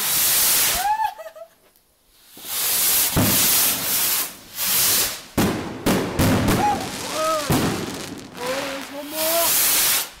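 Fireworks going off in quick succession: loud hissing rushes of rockets launching, and a run of sharp bangs from bursting shells between about three and eight seconds in.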